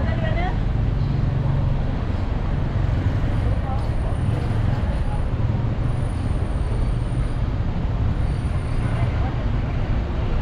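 Street traffic: motor vehicle engines giving a steady low rumble, with faint voices of people nearby.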